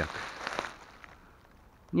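Soft rustling of grass and leaf litter close to the microphone, with a few light crackles, dying away after about half a second into faint background.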